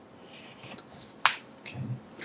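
A single sharp click about a second in, after a few faint soft rustles, followed by a spoken "okay".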